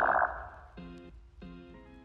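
Electronic logo sting: a rising synth sweep that tails off within the first half second, followed by two short pitched glitchy blips about two-thirds of a second apart.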